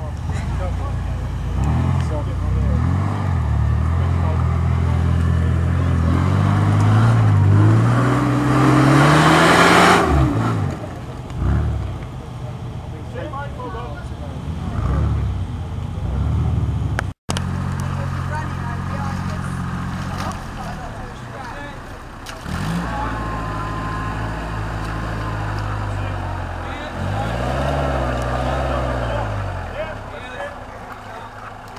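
Off-road 4x4 engines working in deep mud: one engine revs hard, its pitch climbing over several seconds to a loud rushing burst about ten seconds in. After a cut, a Land Rover Series engine runs steadily and revs up and down near the end.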